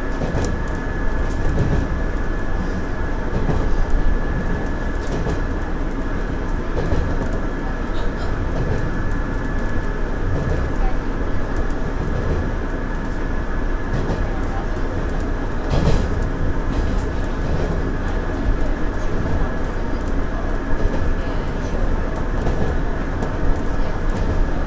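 JR Central 117 series electric train running at speed, heard from the cab: a steady rumble of wheels on rail with a thin steady high whine and an occasional sharp click from a rail joint.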